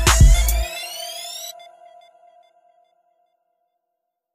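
The closing moment of a hip hop beat: the bass and drums stop under a second in, and a rising synth sweep cuts off at about a second and a half. A held tone lingers and fades out soon after.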